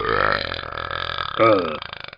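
A long, drawn-out burp of about two seconds, swelling again about a second and a half in and trailing off at the end. It is a dubbed-in cartoon voice clip, not a sound from the film.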